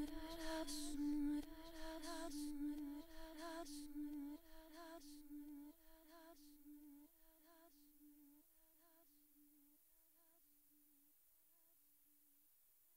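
The last bars of an ambient tribal electronic track fading out: a short, slightly bending melodic figure repeats over and over. The bass and brighter layers drop away about four seconds in, and the melody grows fainter until it is barely audible near the end.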